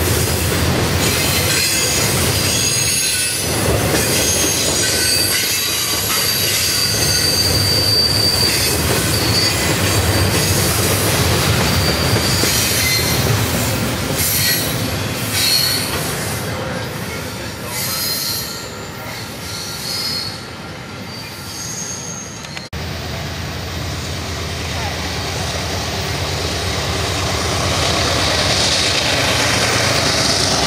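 Double-stack container train rolling past, wheels and well cars clattering, with intermittent high-pitched wheel squeal. About two-thirds of the way through the sound cuts abruptly to a diesel locomotive approaching, its engine growing louder toward the end.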